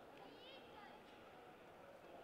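Near silence: faint, indistinct voices in a large sports hall.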